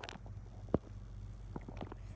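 Steady low hum of a room air conditioner, with one sharp tap about three-quarters of a second in as the phone is handled and its camera flipped.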